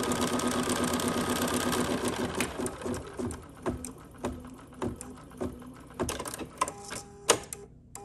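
Computerized embroidery machine stitching a tack-down line through fabric and batting: a fast, steady run of needle strokes over a motor tone for about two and a half seconds, then slower single clicks a little over half a second apart.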